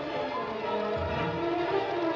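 Orchestral film score with violins holding sustained notes; a deep low sound joins about halfway through.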